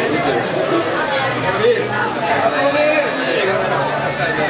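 Several people chatting and talking over one another, men's voices mixed together.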